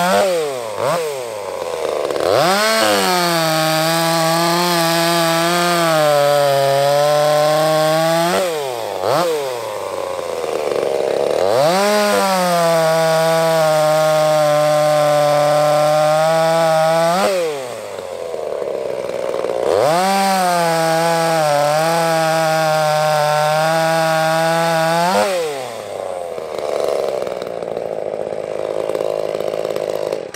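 Ported Echo CS-355T, a 35cc two-stroke top-handle chainsaw with a 16-inch bar and 3/8 low-profile chain, bucking firewood logs. It makes three full-throttle cuts of about five to six seconds each, the engine note wavering slightly under load, and the revs fall back toward idle between cuts.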